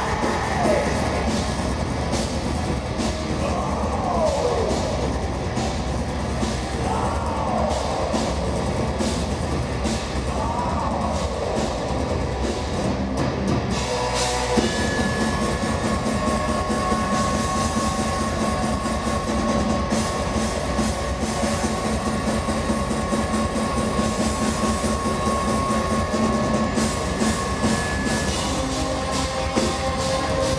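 Metal band playing live at full volume, electric guitar over a drum kit, heard from the audience. Several falling pitch sweeps come in the first half, then after a short break about halfway the band holds long sustained chords.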